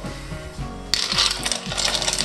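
Ice cubes dropped by hand into a metal blender jug of liquid gazpacho, clattering and clinking against each other and the jug. The clatter starts about a second in.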